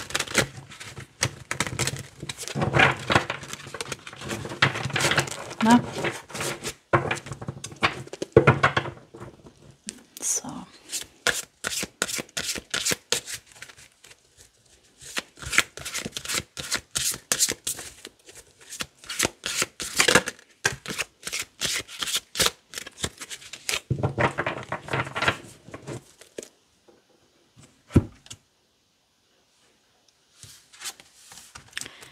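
A deck of oracle cards being shuffled by hand: rapid runs of soft card flicks and slaps, in several bursts separated by short pauses, dying away a few seconds before the end apart from one sharp tap.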